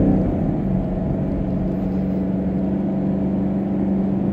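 Steady car noise heard inside the cabin: a low rumble with a constant hum.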